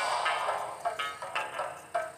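Film trailer music: a run of separate pitched notes, roughly two a second, under a title card.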